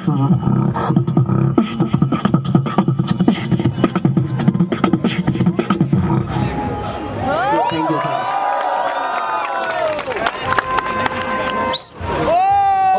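Beatboxer performing into a handheld microphone: a fast run of kick and snare clicks over heavy bass for about six seconds, then a stretch of rising and falling pitched glides.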